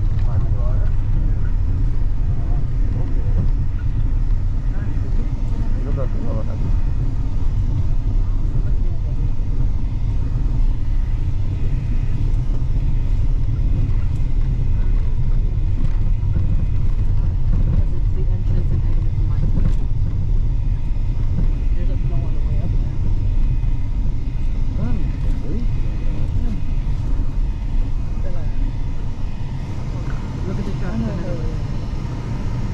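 Steady low rumble of a moving car's engine and tyres, heard from inside the cabin, with faint voices talking under it.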